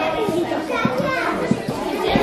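Many children's voices talking and calling out at once, an overlapping chatter with no single speaker standing out.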